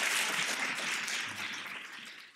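Audience applauding, the applause growing fainter toward the end.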